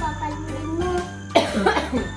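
Background music with a steady bass note, and a short, loud cough from a woman about one and a half seconds in.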